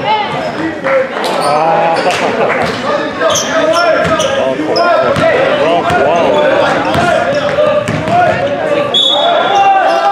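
A basketball being dribbled, with sneakers squeaking on the gym floor in short sliding chirps, and voices calling out in an echoing gym.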